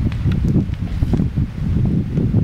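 Wind buffeting the camera microphone in an uneven low rumble, with rustling and a few light clicks of handling as the handheld camera swings about.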